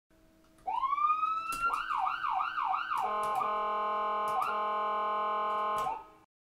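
Fire engine's electronic siren: a tone winds up quickly, then cycles up and down in a fast yelp about three times a second. It then changes to a steady blaring chord with brief dips, which cuts off just before the end.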